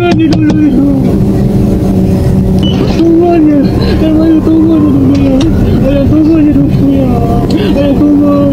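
Car engine and road noise heard from inside the cabin, a steady low hum, with a man's voice shouting and pleading over it.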